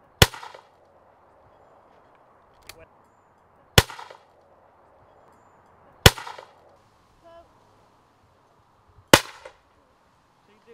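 Four single shotgun shots a few seconds apart, each a sharp report with a short ringing tail.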